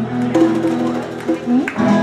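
Guitars in a blues jam playing the closing bars of a song, with a few held notes over a steady low note that stops near the end.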